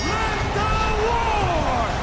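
Wrestling commentator's voice with one long, falling call, over a steady background of arena crowd noise.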